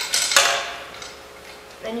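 A bolt with its washers and a steel bracer clinking against a steel leg tube as the bolt is slid through the hole: one sharp clink about half a second in, then fainter clicks.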